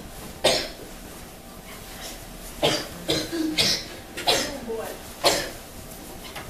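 A person coughing repeatedly: about six short coughs, two of them in a quick pair near the middle. They are acted coughs from a patient with a cough.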